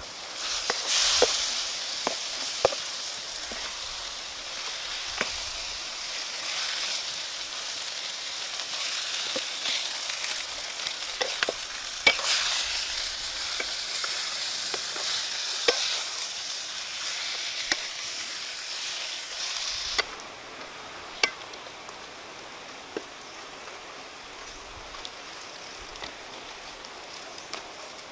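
Baby corn, peppers and shrimp sizzling as they are stir-fried in a wok over a wood fire, with a wooden spatula scraping and knocking against the pan now and then. The sizzle cuts off about twenty seconds in, leaving a lower hiss with a few single clicks.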